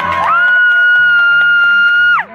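A woman's voice holding one high sung note for about two seconds over a backing track, then sliding down in pitch at the end.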